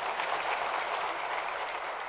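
Audience applause: many hands clapping in an even, dense patter.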